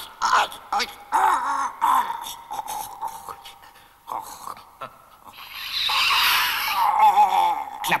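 High-pitched, squeaky character voice making wordless cries: short wavering squeals in the first two seconds, then a longer, louder warbling cry from about five seconds in.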